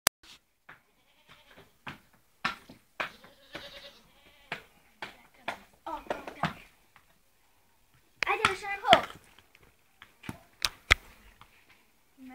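A pony walking, its hooves knocking at an irregular pace, with a few short bursts of a person's voice, the loudest about eight seconds in.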